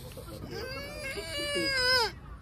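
A child's high-pitched voice in one long wail or cry of about a second and a half. It grows louder, then drops in pitch as it breaks off.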